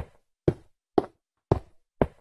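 A steady run of short, sharp knocks, evenly spaced at two a second, with silence between them.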